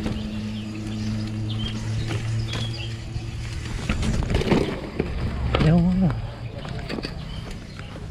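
Mountain bike rattling and knocking as it rolls down a rough dirt trail over roots and rocks, with a steady low hum in the first half. About six seconds in, a short wordless voice sound wavers over the noise.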